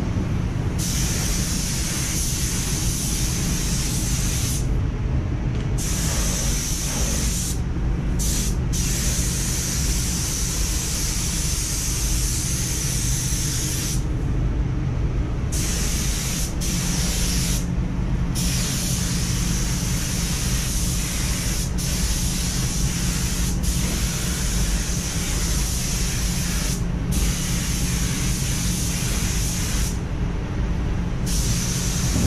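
Gravity-feed spray gun spraying paint: a steady hiss of air and atomised paint that breaks off briefly several times as the trigger is released, the longest pause about a second and a half. A steady low hum runs underneath.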